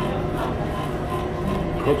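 Steady indoor room noise with faint background music, a few sustained notes shifting every second or so.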